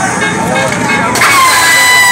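Crowd at a live rap show shouting and cheering over loud music, with a long steady high note coming in about halfway through and holding.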